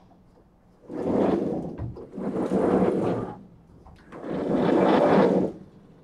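Vertically sliding lecture-hall chalkboard panels being pushed up along their tracks: three rumbling runs of about a second each, with short pauses between.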